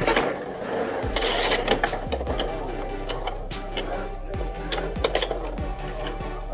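Two Beyblade X spinning tops whirring in a plastic stadium, with repeated sharp irregular clacks as they strike each other and the stadium wall.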